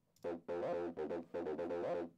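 Synthesizer playing a line of sustained notes, a new note about every half second, starting just after the start: playback of an acid synth part bounced in place from MIDI to audio, which sounds exactly like the MIDI original.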